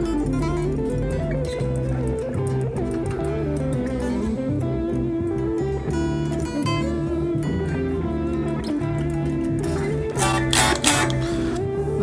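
Squier Jazzmaster Affinity electric guitar being played, a continuous run of notes and chords at an even level.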